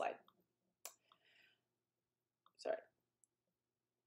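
A single sharp computer mouse click changing a presentation slide, about a second in, between a woman's brief spoken words.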